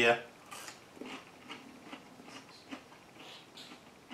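A person chewing a crispy deep-fried Flamin' Hot mac and cheese bite: faint, irregular crunches and mouth noises.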